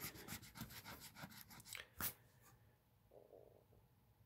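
A coin scratching the coating off a scratch-off lottery ticket: a quick run of short, faint scrapes for about two seconds, then a single sharp tap.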